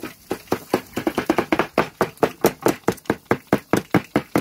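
Large cleaver chopping grilled kokoreç on a plastic cutting board in fast, even strikes, about five a second, sparse at first and steady and louder from about a second in.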